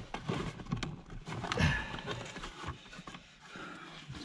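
Irregular clicks, knocks and scraping of a plastic seat-rail trim cover and the metal seat runner being handled and pried at, with a louder scrape about a second and a half in and quieter handling near the end.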